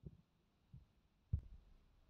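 Three short, low handling thuds as a plastic remote control is turned over in the hand, the third one the loudest and with a sharp click.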